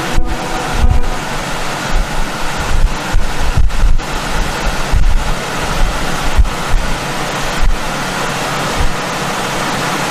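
Steady rushing noise on a body-worn microphone, with irregular low thumps as it is jostled.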